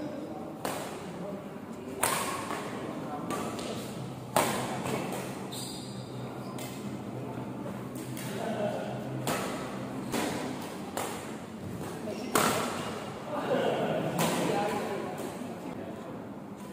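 Badminton rackets striking a shuttlecock during a doubles rally: about ten sharp smacks at uneven intervals, the hardest a couple of seconds in and again a little past midway. Each one echoes in a large hall, and players' voices come between the shots.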